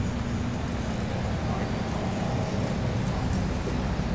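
Steady low rumble of distant road traffic in an outdoor city ambience, with no single event standing out.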